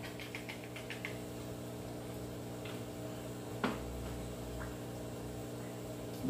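Faint clicks and small taps of a spoon working filling into a hard taco shell, with one sharper tap about three and a half seconds in, over a steady low hum.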